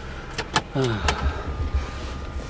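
Car cabin with the engine and air conditioning running as a low steady hum; two sharp clicks about half a second in as the camera is handled, then a short vocal sound.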